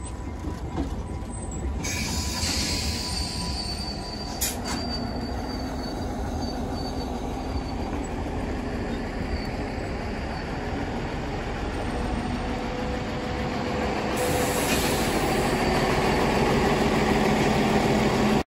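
Train de Charlevoix passenger railcars rolling slowly past at close range, a steady rumble of running gear and engines. A thin, high wheel squeal sounds for a few seconds starting about two seconds in, with a single sharp click partway through; the sound grows louder near the end.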